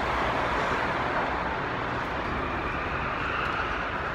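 Steady vehicle traffic noise, an unbroken hiss with a faint rise in pitch near the end.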